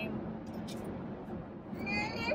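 Steady road noise inside a moving car's cabin, with a toddler's high voice singing in the back seat, clearest near the end.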